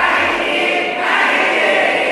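A large group of people chanting loudly in unison, two drawn-out phrases of about a second each, many voices together.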